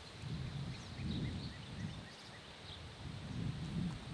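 Faint outdoor ambience: a low, uneven rumble that swells and fades a few times, with a few faint high chirps.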